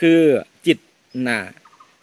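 Speech: a man speaking Thai in three short phrases with brief pauses, the first drawn out and falling in pitch.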